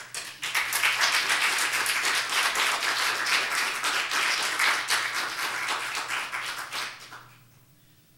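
Church congregation applauding, dense clapping that starts just after the start and dies away about seven seconds in.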